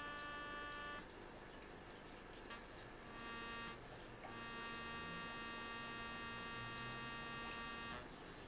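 Faint electrical buzz with many overtones. It cuts out for about two seconds a second in, returns, drops out briefly again a little before halfway, then runs steadily.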